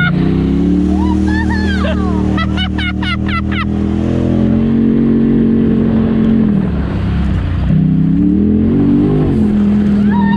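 Side-by-side UTV engine running hard through mud: the revs climb at the start and hold steady, drop off about six and a half seconds in, then climb back up a couple of seconds later. Mud and water spray over the machine throughout.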